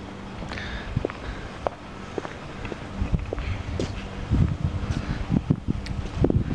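Footsteps walking on a concrete driveway with handheld-camera handling noise: scattered light clicks, then low, uneven thumps from about halfway on, over a faint steady hum.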